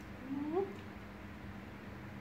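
A pet animal's short rising call, about half a second long, a quarter second in.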